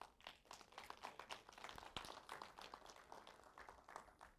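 Near silence with faint, irregular clicks and rustling from a man walking across a stage to a table and handling the things on it.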